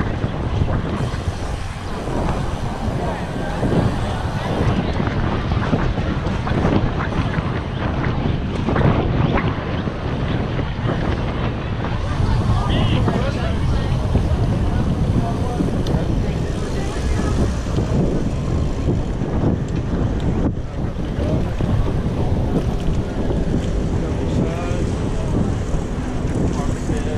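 Steady wind noise buffeting the microphone of a camera riding on a moving bicycle, a continuous low rumble with street traffic underneath.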